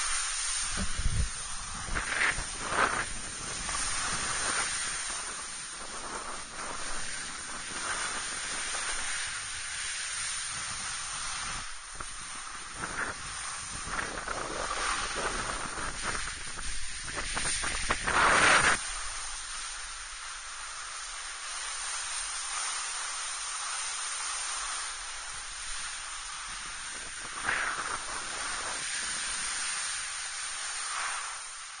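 Snowboard sliding and carving over packed snow: a continuous hiss of the board on the snow, with louder scraping surges as the edges dig in on turns, the strongest about two-thirds of the way through.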